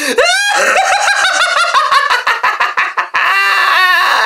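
A person's loud, high-pitched maniacal cackling laugh in quick repeated pulses. It sweeps up into a shriek just after it begins, and the last second is a steadier stretch of cackling.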